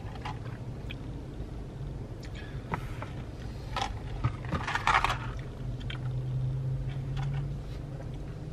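Iced coffee sipped through a plastic straw: a few short slurps and sucking sounds, over a steady low hum in a car's cabin.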